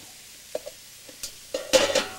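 Tomato puree being scraped out of a tin can with a wooden spoon into a stainless steel kettle: a few faint clicks, then near the end a louder scrape and knock against metal with a brief ring.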